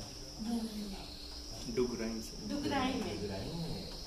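Indistinct voices talking, with short spoken bits about half a second in and again through the middle, over a steady high-pitched drone.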